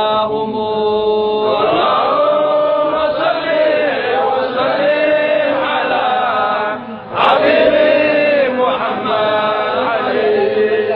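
A man's solo devotional chant, sung in long held notes that waver and bend in pitch, with a brief break about seven seconds in before the chant goes on.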